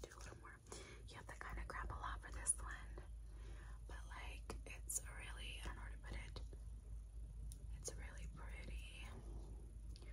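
Soft close-up whispering, with a few sharp clicks scattered through it.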